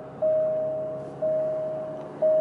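Alfa Romeo Giulia seatbelt warning chime: a single steady tone that sounds about once a second, each one starting sharply and fading, because the driver's seatbelt is not buckled. A faint engine hum runs beneath it.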